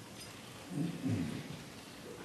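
A man's low voice through a microphone: a short murmured phrase about a second in, over steady background hiss.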